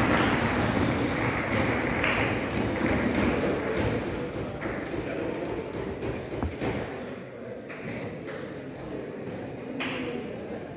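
Audience applause in a large hall, dying away gradually over several seconds into room noise, with a single sharp tap about six and a half seconds in.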